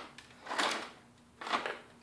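Two brief handling sounds as a vacuum cleaner's electric motor, still wired in, is pulled out of its broken plastic housing.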